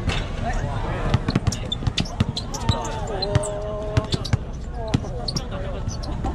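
A basketball bouncing on an outdoor concrete court in play, a string of sharp, irregular knocks, over the voices of student spectators. About three seconds in, one voice holds a long call for about a second.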